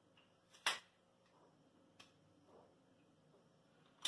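Faint whiteboard marker strokes with a sharp click a little under a second in and a lighter click at about two seconds.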